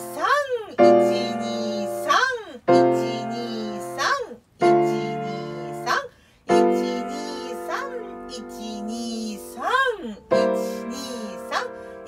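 Piano playing slowly, a chord struck about every two seconds and held to ring. A voice counts the beats in between, "one, two, three", so that the next position is ready in time.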